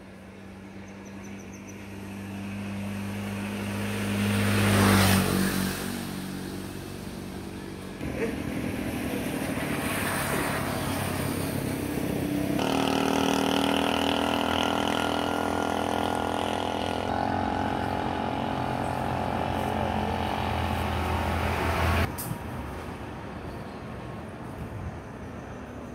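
Motor vehicle engines running: one passes close, loudest about five seconds in, then a steady engine sound changes pitch twice and cuts off suddenly about two seconds before the end.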